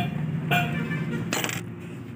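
A brief metallic clatter about one and a half seconds in: a steel bolt or tool clinking against metal in the engine bay during timing belt work.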